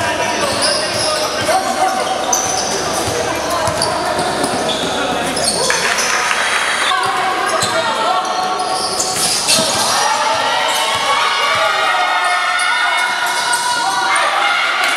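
Live basketball game in a large indoor gym: the ball bouncing on the hard court amid players and spectators calling out, with the hall echoing.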